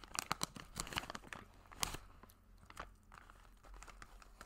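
Plastic jerky pouch crinkling and crackling as it is handled, with a quick run of sharp crackles in the first two seconds and sparser ones after.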